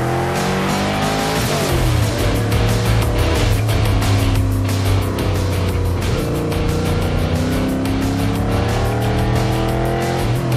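Racing stock car's V8 engine pulling hard from the start, its pitch rising through the revs and dropping back at a gear change, then rising again near the end. Music with a quick steady beat plays over it.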